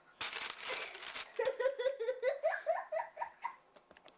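A young girl giggling: a breathy burst of laughter, then a run of quick, high 'ha' notes that climb in pitch.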